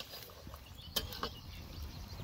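Wood campfire crackling faintly, with a couple of sharp pops about a second in.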